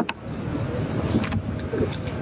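Eating sounds: a roasted rib pulled apart by gloved hands, with many small clicks over a steady low rumble.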